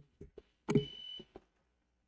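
A short electronic beep, a single steady tone about half a second long, sounds about a second in. It comes among a few brief, low murmured voice sounds.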